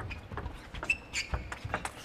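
Table tennis rally: the plastic ball knocks sharply off the rackets and the table in a quick, uneven series of clicks. Low thuds of the players' footwork come in between, and a brief squeak sounds about a second in.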